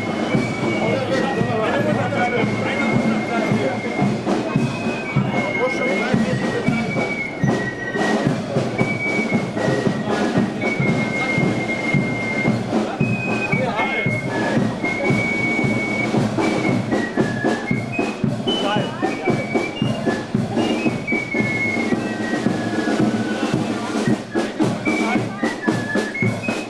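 Parade band music with a high melody of held notes throughout, over the chatter of voices in the crowd.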